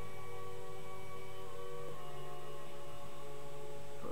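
A steady drone of several held tones, shifting slightly about two seconds in.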